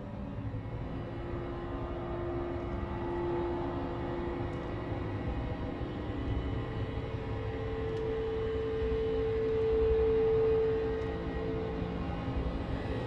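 Dark horror-film underscore: a low rumbling drone under long held tones, the first giving way to a higher one that swells about ten seconds in.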